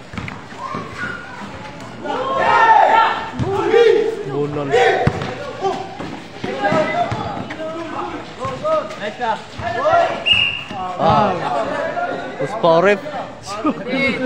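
Basketball game sound: a basketball bouncing on a hard court amid sneaker and play noise, under a steady run of voices calling out from players and spectators, loudest a couple of seconds in.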